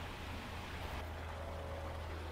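Faint, steady outdoor background noise: a low rumble under a light hiss.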